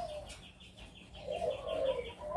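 Doves cooing in an aviary: a run of soft, low, repeated coos starting a little past halfway.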